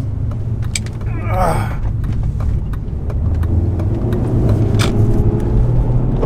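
BMW E36 M3's S52 straight-six running while the car drives at road speed, heard from inside the cabin as a steady low drone with road noise. The drone grows a little louder and fuller about halfway through.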